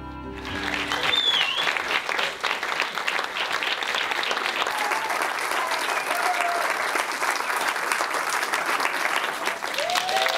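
Theatre audience applauding, starting about half a second in as the music ends. Steady clapping with a few voices calling out over it.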